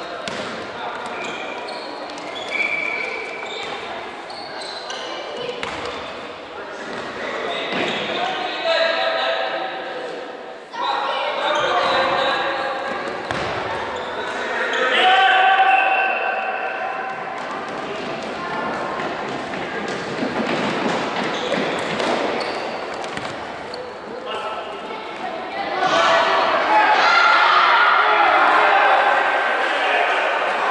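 A football being kicked and bouncing on a wooden sports-hall floor, the knocks echoing through the large hall, amid children's voices calling out during play.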